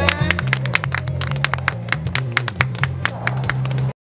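A small audience clapping, many sharp irregular claps, over music with low sustained bass notes; everything cuts off suddenly near the end.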